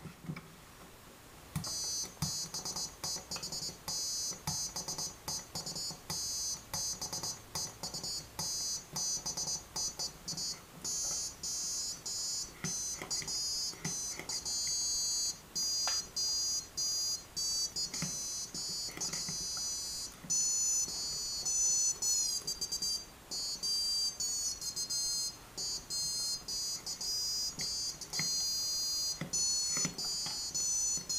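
Piezo buzzer on an Arduino Danger Shield playing a tune as a string of shrill, high-pitched beeping notes, starting about a second and a half in. The pitch jumps from note to note and glides in places as the slide potentiometers are moved by hand, with faint clicks from the sliders.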